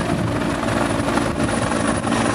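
Helicopter engine and rotor running steadily, mixed with the noise of breaking surf.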